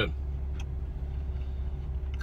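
Steady low hum of a vehicle idling, heard from inside the car's cabin, with a faint constant tone over it.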